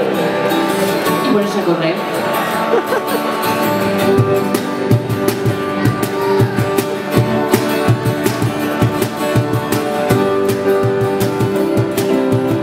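Live acoustic band music: acoustic guitars strumming, with a woman's voice at the mic in the first few seconds. Regular cajón strokes come in about four seconds in and keep a beat under the guitars.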